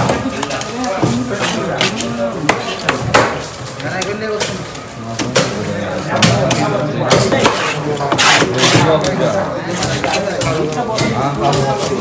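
Knife cutting through a black pomfret on a wooden cutting board, with a few sharp knocks of the blade on the board, under steady chatter of several voices.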